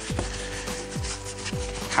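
A paintbrush scrubbing chalk paint onto a wooden cabinet panel, over background music with a steady low beat.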